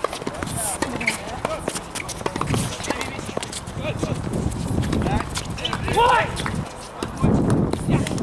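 Tennis on an outdoor hard court: a racket strike on the ball near the start, then scattered knocks of ball bounces and shoe steps on the court, with voices talking and calling out around the courts.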